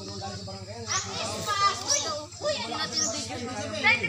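Children's high-pitched voices calling out and shouting excitedly, starting about a second in.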